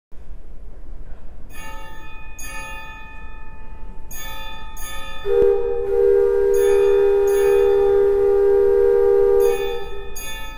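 Bell-like chimes struck in pairs. About five seconds in, a loud steady tone joins them and holds for about four seconds.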